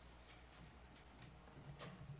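Near silence: hushed room tone in a church sanctuary with a low hum and a few faint, irregular clicks.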